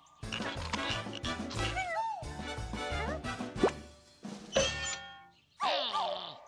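Playful cartoon music score with comic sliding sound effects: a quick rising glide about three and a half seconds in and falling sliding tones near the end.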